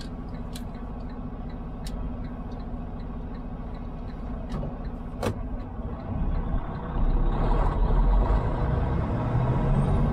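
Semi truck's diesel engine heard from inside the cab, idling steadily with a few sharp clicks in the first half. About six to seven seconds in it gets louder and deeper as the truck pulls away under load.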